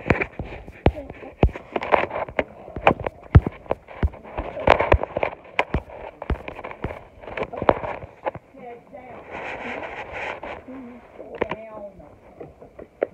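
Irregular sharp knocks and taps of a phone being handled, fingers moving close over its microphone, over a murmur of voices.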